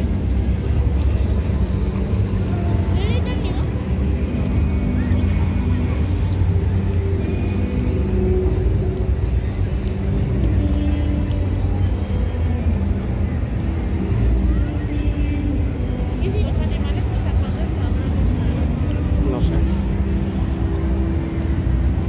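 Outdoor fairground ambience: a steady low rumble with music and scattered voices in the background, none clearly in front.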